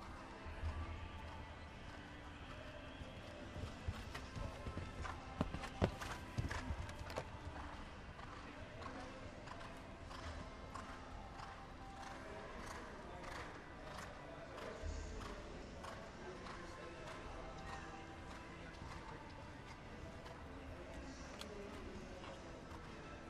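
Hoofbeats of a hunter horse cantering on the soft footing of an indoor show ring, heard faintly, with a few louder knocks and thuds about four to seven seconds in. Faint background music and murmur run underneath.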